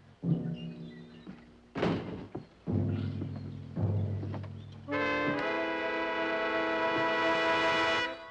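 Dramatic orchestral score: a series of low, sharply struck notes with percussion hits, then a loud brass chord held from about five seconds in.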